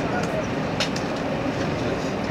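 Running noise of a JR Hokkaido 789 series electric express train heard from inside the car at speed: a steady rumble of wheels on rail, with a couple of faint clicks a little under a second in.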